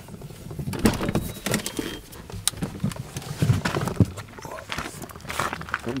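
Irregular clicks, knocks and rustling of someone getting out of a car, with the door unlatching and swinging open.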